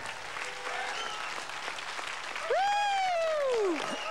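Audience applauding, with a loud, long pitched wail about two and a half seconds in that rises briefly, then slides steadily down and stops just before the end.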